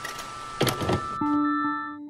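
Electronic intro sting for a logo animation: whooshing sweeps with a few sharp hits, then a low held synth note about halfway through that begins to fade.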